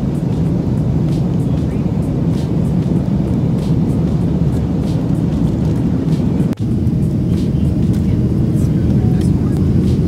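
Airliner cabin noise: the steady low drone of the engines and rushing air inside the passenger cabin. It cuts out for an instant about six and a half seconds in.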